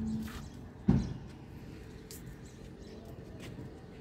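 A metal gate shutting with a single sharp clank about a second in, followed by faint light clicks.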